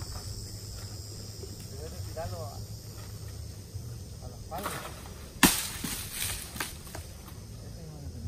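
Steady high-pitched drone of insects in the grove, with a sharp crack about five and a half seconds in followed by a few lighter crackles, like dry palm fronds snapping underfoot.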